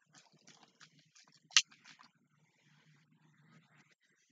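Faint rustling handling noise with one sharp click about one and a half seconds in, as a plastic drink bottle is handled.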